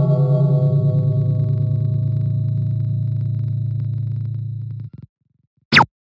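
Slideshow sound effects: a low, sustained ringing tone with a wobbling beat, fading slowly and stopping about five seconds in. Then comes a brief, loud swoosh falling in pitch near the end, as an answer is revealed.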